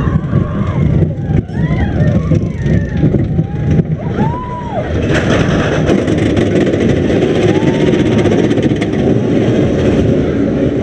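Roller coaster train rolling along its track, heard from a seat on board: a steady low rumble with fine rattling that grows denser about halfway through. Riders' voices rise and fall over the first half.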